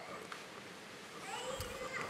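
A pause between speech in a large hall: quiet room tone, with a faint rising voice-like sound near the end.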